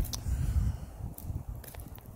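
Footsteps of a person walking outdoors, over a low, uneven rumble on the microphone.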